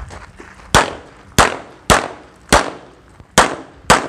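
Six pistol shots fired in quick succession, about half a second to a second apart, each a sharp crack with a short ringing tail.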